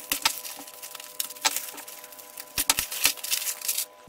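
Plastic mailer bag being opened and unwrapped by hand: irregular crinkling with many sharp crackles and clicks.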